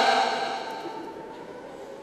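A man's chanted Pashto lament trails off at the end of a phrase over about a second, leaving a short pause between lines with only faint traces of his voice.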